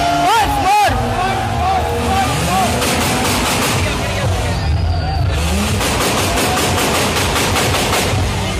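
Car engine held at high revs during a burnout, the pitch climbing in repeated revs, over the hiss of spinning, smoking tyres. Crowd voices shout over it in the first second.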